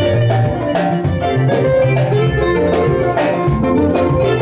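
Band rehearsal music: an electronic keyboard playing over a steady drum beat and bass line.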